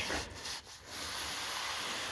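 Cloth rag rubbing tung oil over dry American chestnut boards: a steady scrubbing swish, uneven in the first second and then even.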